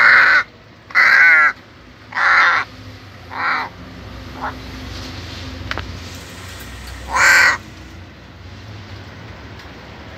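Crow cawing: four caws about a second apart, the fourth shorter and weaker, then a pause and one more caw at about seven seconds.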